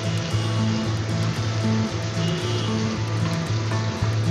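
Background music with a repeating short-note melody, over a steady hiss of pointed gourds frying in oil in a pan.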